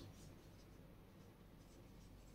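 Felt-tip marker faintly writing on a whiteboard, barely above the room's background hum.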